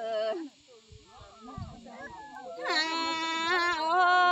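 Folk duet singing: a long held sung note ends about half a second in, then after a quiet pause a new drawn-out sung phrase with a slightly wavering pitch starts near three seconds in.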